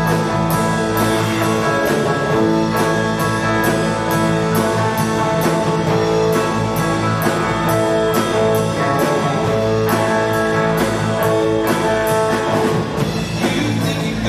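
A live rock band playing an instrumental passage: electric guitars holding chords over bass and a drum kit keeping a steady beat with cymbal strokes.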